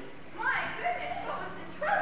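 Two short vocal cries, each a quick slide in pitch, about a second and a half apart.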